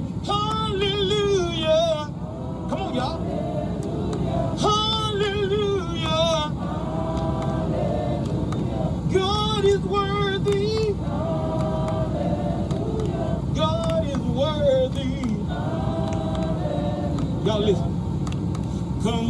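Gospel praise song sung in call and response, a lead voice and the congregation trading phrases with wavering, vibrato-laden pitch. A steady low rumble runs underneath.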